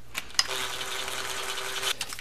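Makita cordless driver spinning a six-millimetre bolt into an engine cover: a couple of light clicks, then a steady motor whir for about a second and a half that stops just before the end.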